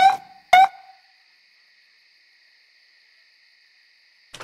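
Two short police siren chirps, about half a second apart, then near silence.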